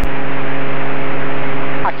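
Steady cabin drone of a light airplane's piston engine and propeller in cruise, a constant low hum under a wash of noise. There is a click at the start, and the drone drops back just before the end.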